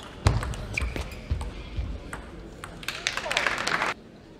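Table tennis rally: sharp clicks of the celluloid ball off bats and table, with heavy thuds of the players' footwork. In the last second comes a burst of crowd applause and voices, which cuts off suddenly.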